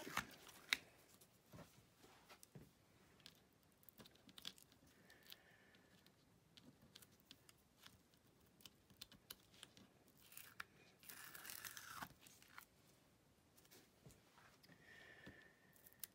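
Faint peeling and crinkling of tape and thin metallic foil being lifted off a cutting mat with a spatula tool, with scattered small clicks and a somewhat louder stretch of peeling about eleven seconds in.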